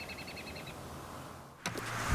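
Faint bird trill: a rapid run of high, evenly repeated chirps that stops a little under a second in. Near the end the sound cuts to a low rumble.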